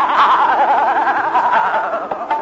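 Male khayal vocalists in Raag Darbari singing a fast gamak passage: the held voice shakes rapidly up and down in pitch many times a second, drifting slowly lower and thinning near the end.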